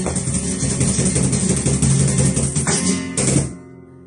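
Flamenco guitar and cajón playing bulerías, full of sharp percussive strikes. The piece ends on a final accent about three and a half seconds in, and a guitar chord rings out faintly after it.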